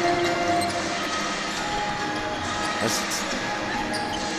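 Basketball game sounds in a gym: a ball dribbled on the hardwood court, with scattered players' shouts over the steady hum of the hall.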